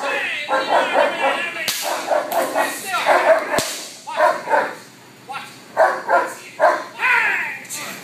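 German Shepherd barking hard in rapid runs at a decoy during protection work, with two sharp cracks cutting through the barking.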